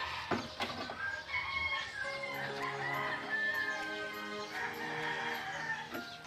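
A rooster crowing, heard over soft background music with steady held notes.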